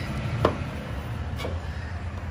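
A sharp metal click about half a second in and a fainter one near the end, from the aluminum stall divider and its latch being handled, over a low steady rumble.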